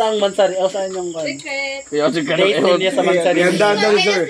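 People talking, over a steady high-pitched drone of crickets.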